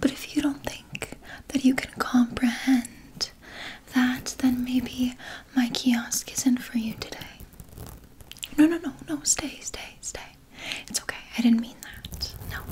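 A woman's voice speaking softly in a close, half-whispered voice, in short broken phrases.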